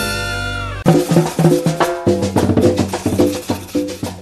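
Salsa band playing: a held brass-and-band chord slides down and cuts off just under a second in, then drums, percussion and bass take up a rhythmic groove.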